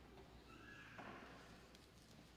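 Near silence: room tone, with a faint, brief high squeak that rises and falls about half a second in, and a soft click about a second in.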